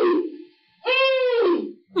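A woman's high voice giving long drawn-out cries: one note trails off about half a second in, and a second rises and falls from about a second in until near the end.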